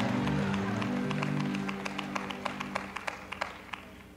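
A held musical chord sustained under scattered clapping from an audience; the claps come a few a second, thin out and die away as the whole sound fades.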